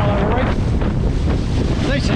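Strong wind buffeting an action camera's microphone, mixed with rushing sea water as a kiteboard skims the surface. A couple of short gliding whistle-like tones sound near the start and again near the end.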